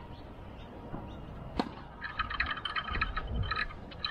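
One sharp tennis-ball impact about a second and a half in, then a rapid run of high ticks lasting nearly two seconds.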